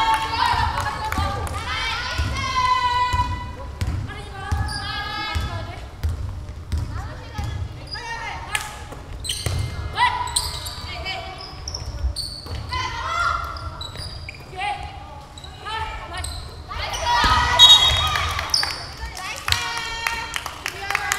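Players and bench calling and shouting during a basketball game, loudest near the end, with a basketball bouncing on the hardwood court a few times about halfway through.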